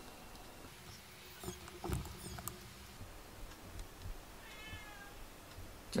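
A cat's faint, short meow about four and a half seconds in, with a few light taps and knocks in the first half.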